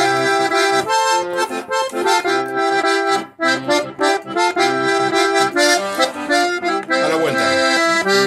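Diatonic button accordion (verdulera) playing the first zapateo section of a chacarera: a quick melody in chords with a short break about three seconds in.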